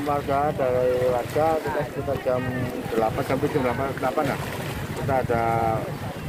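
A man speaking in short phrases, with wind rumbling on the microphone.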